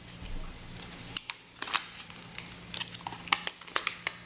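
Hands unwrapping a coiled laptop charging cable from its paper wrap: light crinkling of paper, with scattered sharp clicks as the cable is handled.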